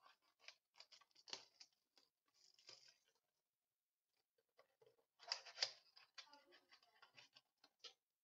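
Clear plastic shrink-wrap being peeled off a small cardboard trading-card box, in a run of thin crinkles and snaps. The box is then handled and opened, with a short pause and then a louder cluster of crackles about five seconds in.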